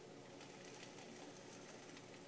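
Faint, steady sizzling of a turkey grilled cheese sandwich frying in a pan.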